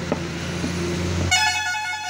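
A cleaver strikes once into goat head bone on a wooden chopping stump, over a low steady hum. About a second and a half in, a loud, steady, high pitched tone, like a horn, sounds for under a second and is the loudest thing.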